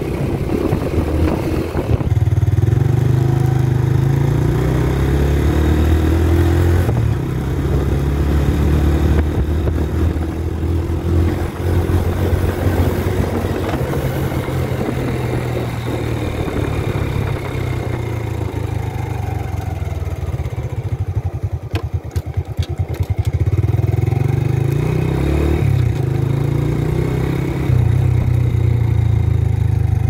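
Small Honda motorcycle running on the road, with a loud low rumble of wind on the microphone that swells and eases throughout.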